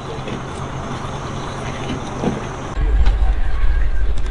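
Hyundai Universe coach engine idling with a steady low hum. About three-quarters of the way through, the hum cuts off and a louder, deep rumble takes over.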